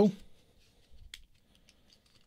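A few faint, short clicks from a black serrated folding knife being handled and folded shut, about a second in.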